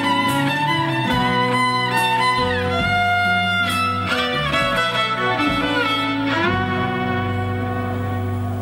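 Live band playing an instrumental break: a fiddle carries the lead with sliding, sustained notes over strummed guitars.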